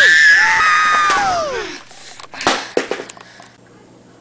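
A person's high-pitched scream, held for over a second and then falling away in pitch, followed a moment later by a few sharp knocks.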